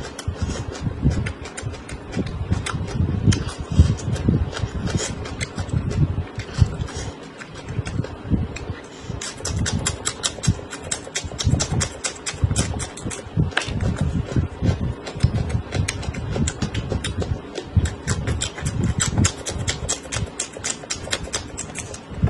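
Raw green chili peppers being bitten and chewed close to the microphone: a steady run of crisp crunches over the chewing, thickest from about nine seconds in.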